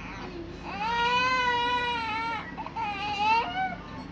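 A six-month-old baby crying: one long, high-pitched wail starting a little under a second in, then a shorter cry that rises in pitch near the end.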